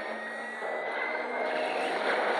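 A steady drone of several sustained tones, with one high tone slowly rising in pitch.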